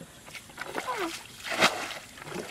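Water splashing and sloshing as a plastic bucket scoops muddy channel water and throws it out, loudest about a second and a half in. A short voice-like call glides down in pitch about a second in.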